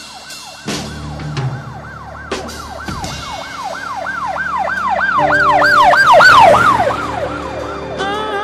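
A yelping siren sound effect in a music mix, its pitch sweeping up and down about three times a second, growing louder to a peak about six seconds in and then fading. A few drum hits come early on, and held music chords come in from about five seconds.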